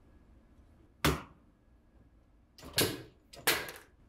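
Three sharp knocks as a padded detachable arm is pushed and worked onto a dress-form mannequin's shoulder: one about a second in, then two close together near the end.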